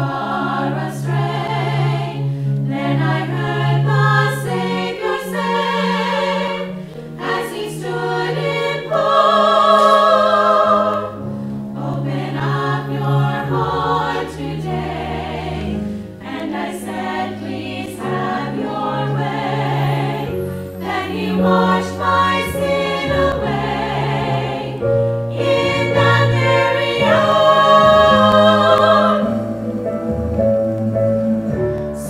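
A small women's choir singing a hymn together, with a wavering vibrato on the long held notes.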